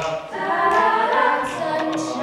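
A cappella vocal group singing in harmony, with a beatboxer's mouth-made percussion hits sounding through the chords.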